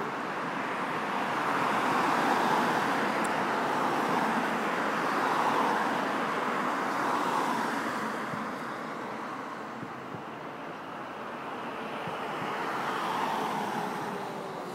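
Road traffic going by: a steady rush of tyres and engines that swells and fades as cars pass, louder in the first half and again near the end.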